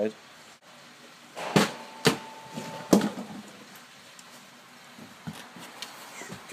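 Three sharp knocks about a second and a half, two and three seconds in, from wood and tools being handled on an MDF panel. A brief thin steady tone runs between the second and third knock.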